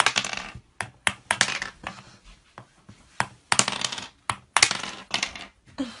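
Plastic toy mallet tapping the plastic ice blocks of a penguin ice-breaking game, with blocks clattering as they knock loose: about a dozen sharp clicks at uneven spacing, each with a short rattle.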